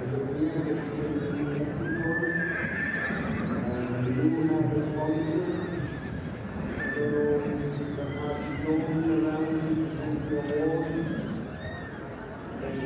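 Shire horses whinnying over and over, several calls a few seconds apart, with people's voices in the background.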